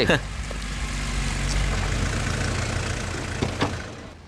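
A motor vehicle's engine runs with a steady low rumble under a noisy hiss, easing off toward the end.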